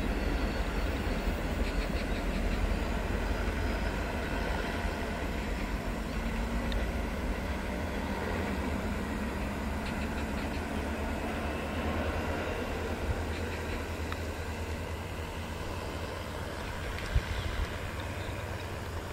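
A two-car Mugunghwa-ho train hauled by a diesel locomotive is running away along the track, a low rumble that slowly fades. A single short knock comes near the end.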